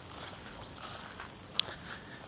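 Steady, high-pitched chorus of insects, with one sharp click about one and a half seconds in.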